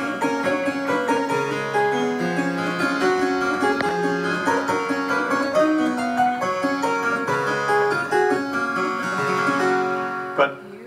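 A 1712 Keene and Brackley spinet, a small English harpsichord, being played: a steady stream of plucked notes, a moving bass line under higher melodic lines.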